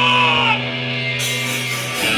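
Live rock band's electric guitar and bass ringing through their amps in a steady, held droning chord. A hiss joins a little past halfway.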